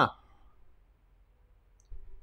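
A man's short "huh" at the start, then quiet room tone with a faint click just before he speaks again near the end.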